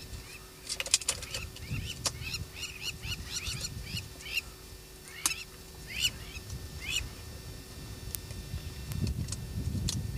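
Birds calling: a run of short, arched chirping notes, a few a second, with sharp clicks among them. A low rumble underneath grows near the end.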